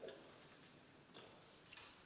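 Near silence in a quiet room, broken by three faint short clicks: one at the start, then two more about a second and a half later.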